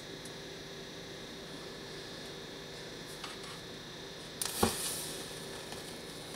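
A six-turn 30-gauge nichrome wire e-primer, coated in dried smokeless powder and acetone slurry, ignites on 24 volts. About four and a half seconds in there is a sudden fizzing burst with a sharp snap, dying away within about a second, over a steady low hum.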